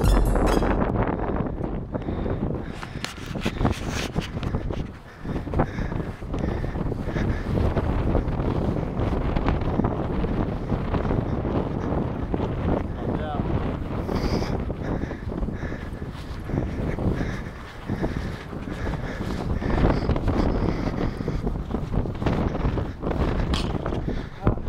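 Wind buffeting an outdoor camera microphone in gusts, with indistinct voices under it.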